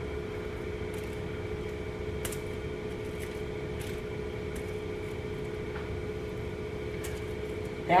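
Steady appliance hum in a kitchen, with a few faint clicks as ham slices are laid into a foil-lined pan.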